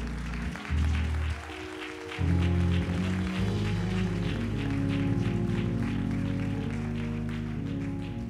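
Congregation clapping and applauding over sustained low instrumental chords. The clapping builds about two seconds in and thins out near the end.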